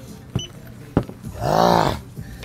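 A man lets out a drawn-out, wordless groan that rises and falls in pitch near the end, a pained reaction to the burn of an extremely hot chip. A couple of sharp clicks come before it.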